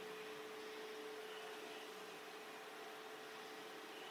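Faint room tone: a steady hiss with a faint steady hum, and nothing else.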